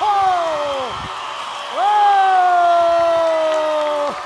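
A woman's voice holding two long high sung notes, each sliding slowly down in pitch; the first fades out about a second in, and the second begins a little before the two-second mark and is held to the end.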